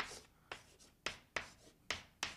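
Chalk writing on a blackboard: about five short, sharp taps and scratches as the chalk strokes land, with quiet gaps between.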